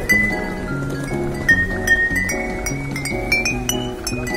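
Bottle piano: hanging glass bottles tuned with water, struck to play a quick melody of short, clinking, ringing notes over a repeating pattern of lower notes.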